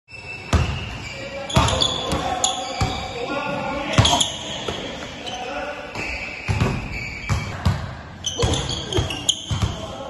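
Basketballs bouncing on a hard gym floor: about a dozen uneven thuds, each echoing in a large hall, with voices talking under them.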